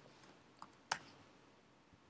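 Faint clicks from a computer keyboard and mouse during code editing: one sharp click about a second in, with a few fainter ones.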